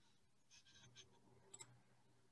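Near silence with a few faint clicks from working a computer: a cluster about half a second in, one at a second, and one near a second and a half.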